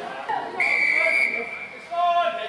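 Rugby referee's whistle: one steady, high-pitched blast lasting a little over a second.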